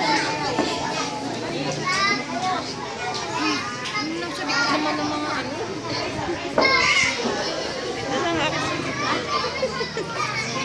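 Many young children's voices chattering and calling out at once, a busy crowd of small kids with adults talking among them. A sudden louder burst about six and a half seconds in.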